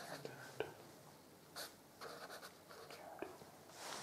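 Pen writing on paper, a few short faint scratching strokes as symbols are written out.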